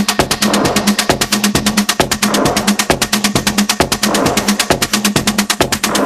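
Hard techno from a DJ mix: a fast, dense run of percussion hits keeps going while the deep kick and bass drop out right at the start.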